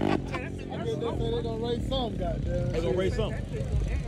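People talking over a low engine rumble, with no clear words in the foreground.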